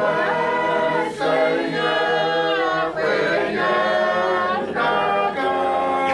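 A church congregation singing a hymn unaccompanied, many voices holding long notes together, with short breaks between phrases.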